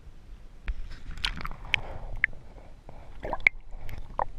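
Water sloshing and dripping right against the microphone, with sharp clicks and several short, high, bubbly plinks.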